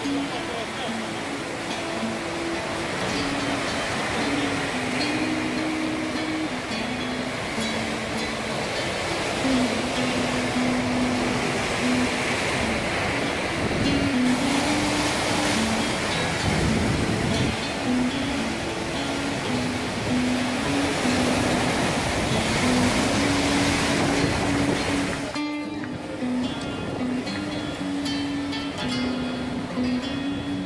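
Sea waves breaking and foaming over rocks, with background music playing over them. The surf grows louder through the middle and drops off abruptly near the end.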